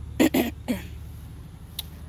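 A person clearing their throat: two short, rough rasps close together right at the start, then a smaller one just after.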